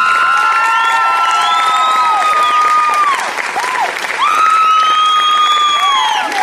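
Audience applauding and cheering, with long drawn-out whoops held over the clapping in two spells, a short dip between them a little past the middle.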